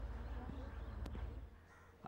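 Faint steady low hum with one brief click about a second in; the hum drops away near the end.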